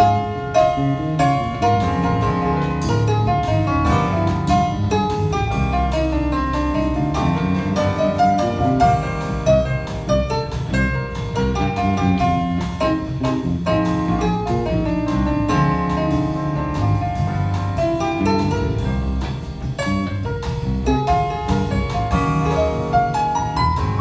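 A jazz band playing live: piano over drum kit and cymbals, with a walking low end, continuing without a break.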